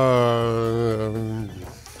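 A man's long, drawn-out hesitation sound, a held 'ehh' while he thinks over a question. It lasts about a second and a half with a slightly falling pitch, then fades.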